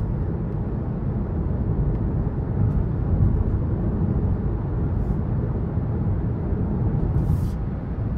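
Steady low rumble of road and tyre noise with the engine running, heard inside the cabin of a 2023 Hyundai Venue driving along a paved road.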